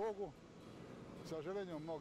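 A man's voice, faint, speaking in two short bits at the start and again past the middle, with quiet outdoor background between.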